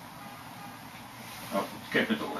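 Whiteboard marker writing on a whiteboard: a faint scratching, then two short squeaks near the end as the tip drags across the board.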